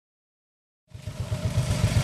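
Silence, then about a second in a go-kart's small engine is heard running, with a low, rapid pulsing.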